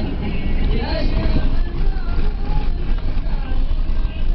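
Steady low rumble of a car's engine and tyres heard from inside the moving car, with a person's voice over it.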